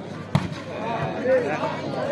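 A volleyball hit hard at the net, a single sharp smack about a third of a second in, followed by voices shouting that grow louder.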